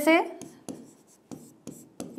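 Hand writing on a blackboard: four short, scratchy strokes, spaced unevenly over about a second and a half, as a word is written out.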